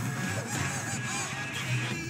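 Several cartoon chickens clucking and squawking at once, in short repeated calls, over background music with a steady low note.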